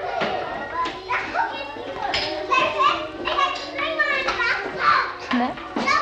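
A group of small children chattering and playing together in a room, many high voices overlapping without a break.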